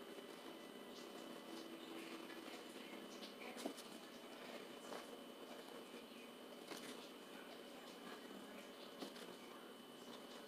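Near silence: faint room tone with a steady faint whine and a few scattered soft clicks.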